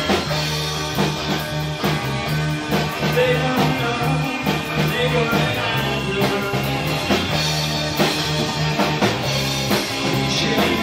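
A rock band playing a song live, with a bass line stepping back and forth between two low notes under a steady drum beat and guitars.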